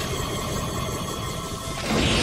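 Cartoon magic-transformation sound effect: a steady low rumble with shimmering held tones under the film score, surging louder just before the end.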